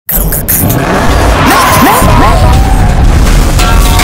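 Staged car-crash sound effects: a heavy low rumble throughout, with tyres squealing in curving pitch sweeps about halfway through, over dramatic music.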